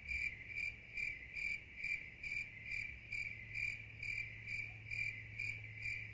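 Cricket chirping steadily in an even rhythm, about two and a half chirps a second.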